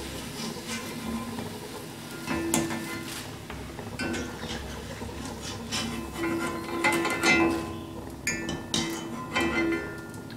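A stainless wire frying spider clinks and taps against a wok and a steel mesh colander as fried corn chips are scooped out and tipped in. The strikes come repeatedly, several with a short metallic ring.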